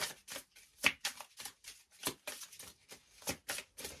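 A deck of tarot cards being shuffled by hand: a quick, irregular patter of card clicks and flaps, about four a second.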